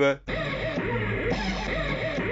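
A sampled "hoover", the detuned rave synth sound of hardcore and jungle, played back from an Amiga 1200 in OctaMED 4: one sustained, wavering note lasting about two seconds, starting just after a quarter second in.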